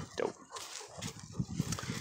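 A dog panting or snuffling in a run of quick, short breaths through the second half, just after a single spoken word.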